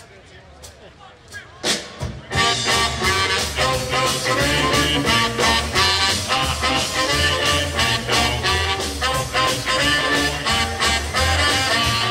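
A live band starts an up-tempo 1950s-style rhythm and blues number about two seconds in, after a few sharp clicks, then plays on with a driving bass line and drums.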